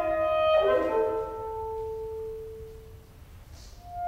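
Solo alto saxophone playing: a held note breaks into a quick flurry of notes about half a second in, then a long lower note that fades away; a new held note comes in just before the end.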